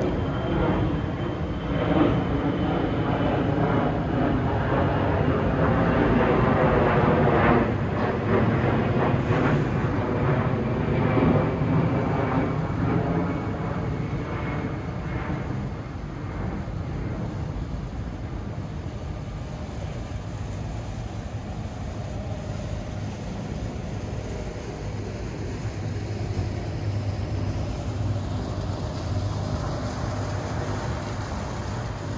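A large passing vehicle, loud for the first half, with a high whine slowly falling in pitch as it goes by, then fading to a steady low rumble.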